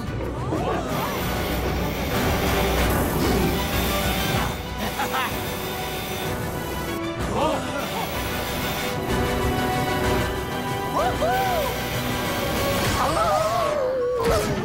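Animated-series action soundtrack: a continuous music score mixed with race sound effects and crash impacts, with a few short cries.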